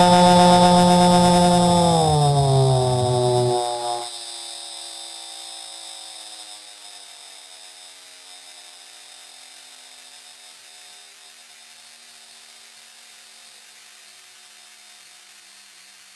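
Experimental musique concrète drone: a loud, many-overtoned tone slides down in pitch about two seconds in and cuts off at about four seconds, leaving a faint tone that keeps sinking slowly over a hiss.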